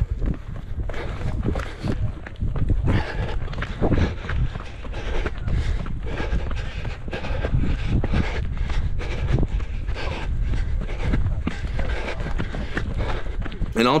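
Running footsteps on a dirt trail, heard through a camera carried by someone running: a steady rhythm of footfalls over a low rumble.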